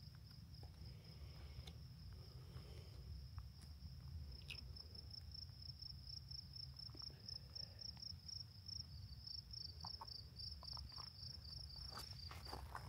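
Faint, steady high-pitched trill of singing insects, pulsing more plainly in the second half, over a low rumble.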